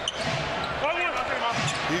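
Live basketball game sound on a hardwood court: sneakers squeaking and the ball bouncing over steady arena crowd noise, with a man's voice coming in at the very end.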